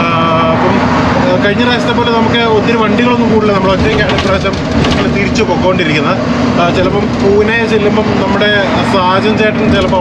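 A man talks throughout over the steady drone of an Ashok Leyland 12-wheel BS6 truck running on the road, heard from inside its cab.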